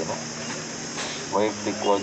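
A man talking to reporters pauses, then starts speaking again about a second and a half in, over a steady high-pitched buzz and a faint low hum in the background.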